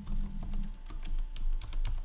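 Computer keyboard being typed on: a quick, irregular run of keystroke clicks.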